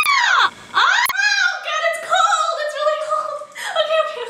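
A woman shrieking as mayonnaise is squeezed onto her head: high screams that rise and fall, about a second apart, for the first second. She then breaks into squealing laughter.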